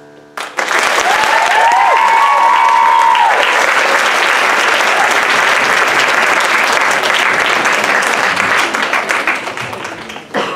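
Audience applause breaks out about half a second in, just as the last keyboard chord dies away, with a few long cheering calls over it in the first few seconds; the clapping thins out near the end.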